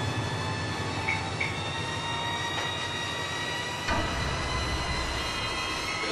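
A low, steady rumbling drone with sustained tones above it, a suspense music bed. The rumble shifts lower about four seconds in.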